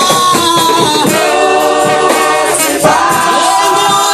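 A congregation singing a gospel praise song together, many voices at once, with hands clapping.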